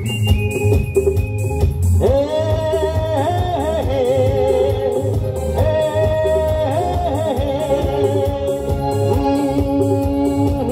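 Live band music with a steady drum beat and keyboard; about two seconds in, a sustained melody line of held, slightly bending notes comes in over it.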